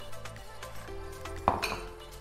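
Background music, and about one and a half seconds in a single clink as a glass bowl is set down on a wooden board.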